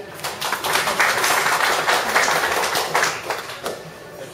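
Audience applauding, building within the first second and dying away shortly before the end.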